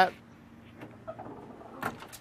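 The trunk latch of a 1949 Mercury releases with a single sharp click near the end, popped by the trunk-release button in the fuel filler door. Faint handling noises come before it.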